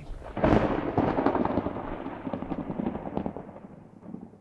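A sudden crash about half a second in that rumbles and crackles, slowly fading away over the next three seconds.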